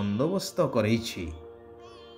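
A voice narrating a story over soft background music. The speech stops a little past halfway and the music carries on alone.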